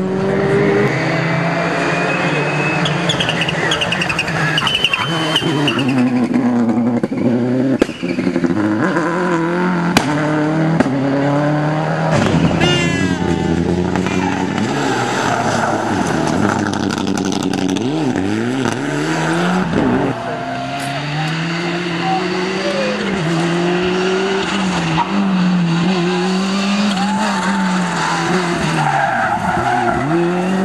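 Rally cars driven hard one after another through tarmac corners, their engines revving up and dropping back repeatedly through gear changes, with tyre squeal and skidding.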